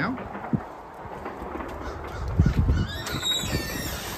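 A bird calling outdoors: a few high-pitched cries in the last second, over steady outdoor background noise and a few low thuds.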